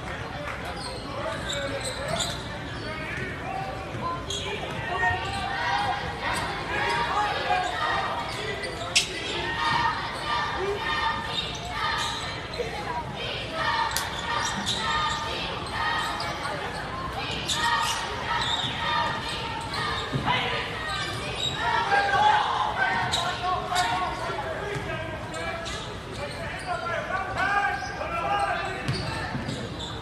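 A basketball being dribbled and bouncing on a hardwood gym floor during play, with short sharp impacts scattered through, over spectators talking in a large gymnasium.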